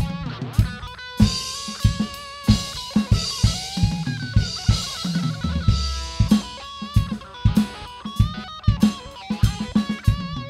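Rock band playing an instrumental passage: an electric guitar lead with bent notes over a steady drum-kit beat of kick and snare.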